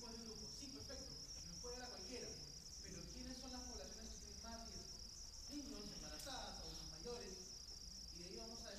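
A man's voice lecturing faintly from a distance, the words too indistinct to make out, over a constant high-pitched whine.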